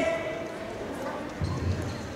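Voices echoing in a large sports hall, with a low thud about one and a half seconds in.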